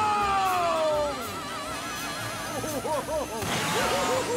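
Whimsical film soundtrack: music with a falling slide and a fast-wavering, siren-like warble, then a whooshing rush about three and a half seconds in as a cartoon car blasts off, with a run of quick bouncing tones.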